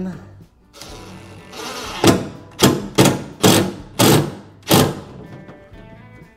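Cordless driver running a stainless self-tapping truss-head screw into a plywood board on an aluminum boat, in about six short bursts on the trigger over three seconds. The screw bites and holds.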